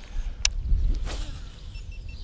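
A baitcasting reel clicks once as it is readied, then about a second in comes the short swish of a cast, over a low steady rumble.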